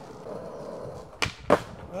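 Skateboard wheels rolling on smooth concrete, then two sharp clacks of the board in quick succession a little over a second in.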